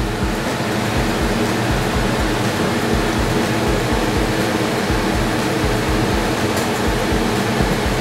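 Steady whooshing fan noise, with a low hum and a regular low throb beneath it.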